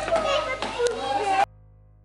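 Young children's voices chattering in a room, cut off abruptly about one and a half seconds in; only faint music remains after the cut.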